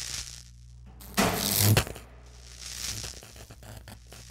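Logo-animation sound effects: washes of noise that swell and fade near the start and again around three seconds in, with a loud crackle lasting about half a second a little over a second in, all over a steady low hum.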